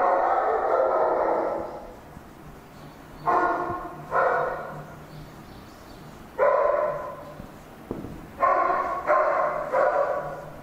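Marker squeaking on a whiteboard as a word is written and underlined: one long squeak at the start, then about six shorter squeaks in an uneven rhythm.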